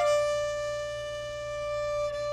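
A Ming Jiang Zhu 905 violin holding one long bowed note steadily.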